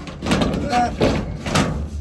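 An underdeck ceiling panel being slid up and pushed into its locking channel by hand, with several sharp knocks and rattles as it seats.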